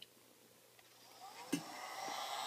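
Heat gun starting up: after a near-silent second its fan spins up with a rising whine, a click sounds about a second and a half in, and it settles into a steady blowing hum.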